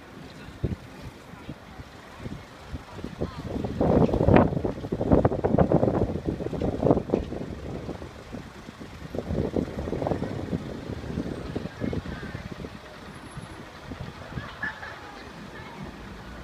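City street ambience: passers-by talking near the microphone, loudest about four to seven seconds in and again around ten seconds, over the sound of cars passing.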